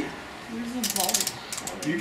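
A quick run of small sharp clicks, like a ratchet, lasting about half a second from a little under a second in, as multimeters and test leads are handled on a table.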